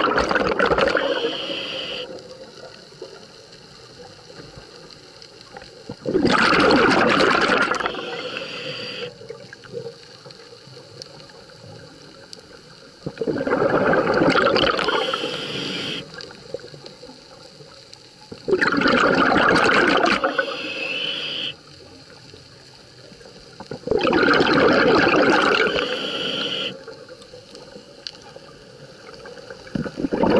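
Scuba diver breathing through a regulator underwater: loud bursts of exhaled bubbles about every five to six seconds, with quieter regulator hiss between breaths.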